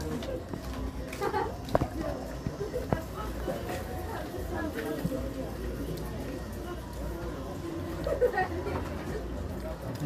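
Low, indistinct talk from the people at the meal over a steady low background rumble, with two sharp clicks a couple of seconds in.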